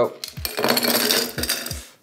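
Ice cubes tipped from a metal cup into a wine glass, clattering and clinking against the glass for over a second.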